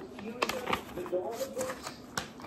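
Handling of an orange race-pack packet: rustling and crinkling, with a few sharp crackles as the ankle timing strap is pulled out.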